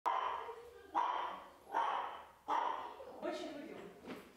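Small dog, a Yorkshire terrier, barking four times, about one bark every 0.8 seconds, each bark ringing on in a small room.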